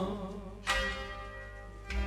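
A pause in Sufi singing: the last sung note trails off, then an accompanying instrument's note rings out about two-thirds of a second in and fades slowly, with a second note struck near the end.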